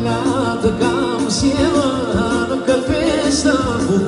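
Live Albanian wedding folk music: a man sings an ornamented, wavering melody into a microphone over amplified band accompaniment with a beat.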